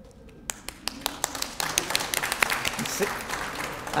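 Crowd applause: a few scattered claps about half a second in, building into denser clapping.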